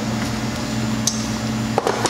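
A steady low hum, with a light click near the end.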